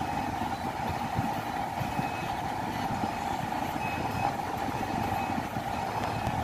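Steady running noise inside a Toyota Prado's cabin: the engine idling with the climate-control fan blowing, an even hum without changes.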